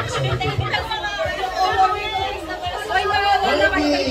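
Chatter: several voices talking over one another, with no clear words.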